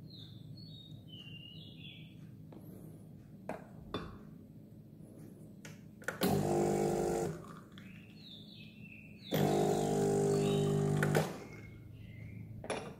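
Home espresso machine's pump buzzing in two runs after its brew button is pressed, first for about a second, then for about two seconds.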